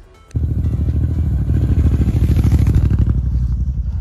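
BMW F 850 GS Adventure motorcycle's parallel-twin engine running steadily while riding along a gravel road. The sound cuts in suddenly just after the start and stops just before the end.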